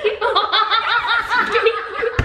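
Girls laughing in a quick run of high-pitched "ha"s, about six a second.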